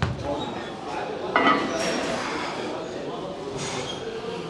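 Gym background: people talking, with metal weights clinking.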